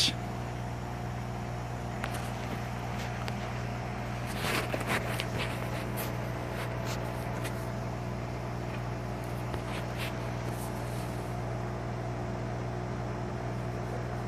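A steady low mechanical hum, with a short cluster of faint scratches and clicks about four to five seconds in and a few scattered ticks after: a wet rock wool cube being trimmed with a blade and handled.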